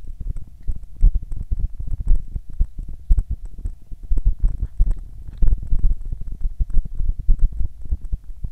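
Loud, irregular low rumbling and thumping on the microphone of a moving action camera, the kind of buffeting that wind or handling puts on a small camera mic, with a faint steady hum under it.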